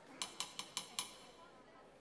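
A conductor's baton tapping on a music stand: five quick, light taps about five a second, calling the orchestra to readiness before the downbeat.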